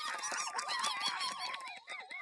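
A flock of birds honking and squawking, many short calls overlapping one another.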